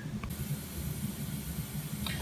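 Faint steady hiss and low rumble of background noise, with light handling noise from the phone camera being moved and a small click near the start.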